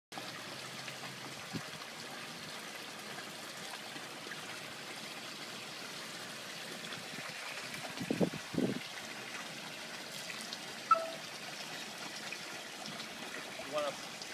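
Steady trickle of running pond water. A couple of low splashes come about eight seconds in, as a large koi is worked into a pan net at the surface.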